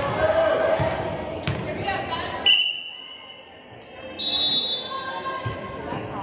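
A volleyball bounced on a hardwood gym floor several times, then a referee's whistle blast about halfway through, and a second, higher shrill tone about four seconds in. Voices echo in the gym.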